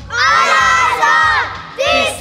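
A team of young boys shouting a cheer together in a hands-in huddle: one long shout, then a second starting near the end.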